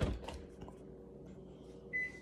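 A dull knock at the start and a few faint clicks, then near the end a single high, steady electronic beep begins: a microwave oven's signal that its timer has run out.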